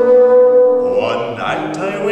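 A bassoon holds one long note for about a second, then plays a few shorter notes, over piano accompaniment.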